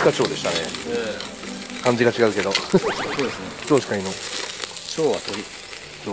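Meat sizzling and crackling on a wire grill over a flaming charcoal fire. Short pitched sounds that slide up and down come and go over it.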